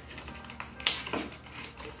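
Cardboard packaging of a makeup brush being handled and opened, with a sharp crackle near the middle amid softer rustling, and faint music underneath.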